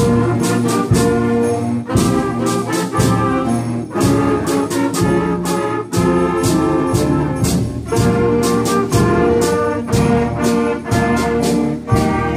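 Middle-school concert band playing, trumpets and trombones carrying sustained chords over frequent sharp percussion strikes; the band comes in suddenly at the start.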